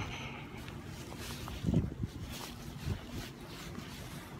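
Wind buffeting a phone's microphone, a steady low rumble, broken by a short low sound a little under two seconds in.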